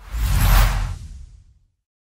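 Whoosh sound effect from an animated logo intro: a single noisy rush with a deep rumble underneath that swells over about half a second and fades away by about a second and a half in.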